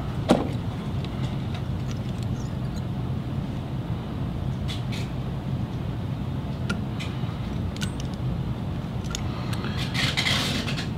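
A steady low background rumble, with a few faint short clicks from fly-tying tools being handled at the vise.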